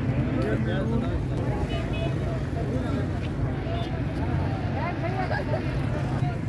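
Open-air market ambience: scattered voices of people talking around the stalls over a steady low drone.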